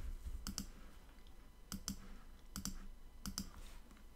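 Computer mouse button clicking four times, each click a quick press-and-release pair, as word tiles are selected one after another.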